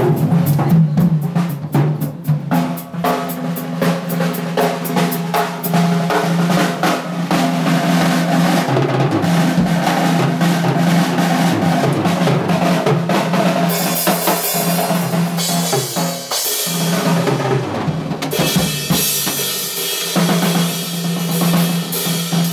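Drum kit played live in a band: a fast run of drum strokes in the first few seconds, then heavy cymbal wash over kick and snare in the second half, all over a held low note from the band.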